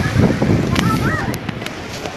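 Wind rumbling on the microphone of a handheld camera, fading after about a second, with a few sharp clicks and faint distant voices.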